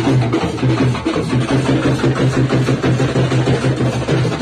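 Live wedding band music driven by fast, steady dholak drumming.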